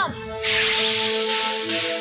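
Cartoon soundtrack: a steady hissing sound effect starts about half a second in and lasts about a second and a half, over sustained background music.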